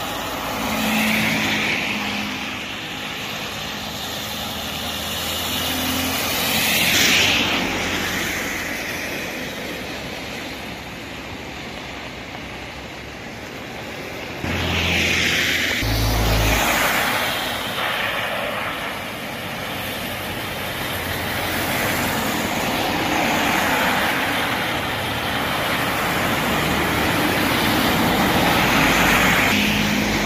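Cars passing on a wet road, the hiss of their tyres on the water swelling and fading as each one goes by, several times over a steady background of traffic.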